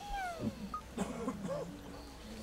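A high, thin cry that falls in pitch at the start, followed by a few short wavering whines, like a cat's meow or a small child's whimper.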